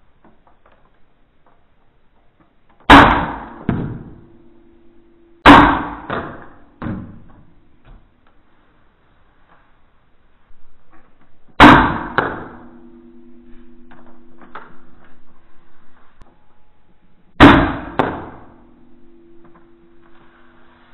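A spring-powered Nerf blaster fired four times, each shot a sharp loud snap that dies away over about a second, with smaller clicks after some. A low steady hum lingers for several seconds after three of the shots.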